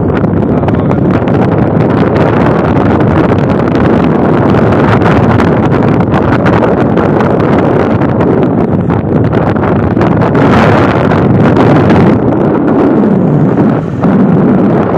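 Wind rushing loudly over the microphone of a moving motorbike, with the bike's engine and road noise running steadily underneath.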